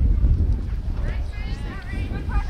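Wind rumbling on the microphone, with faint voices calling out in the middle.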